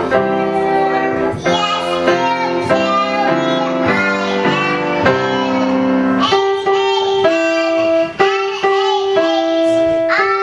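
Instrumental music with held notes. From about six seconds in, a young girl's singing voice comes in higher above it.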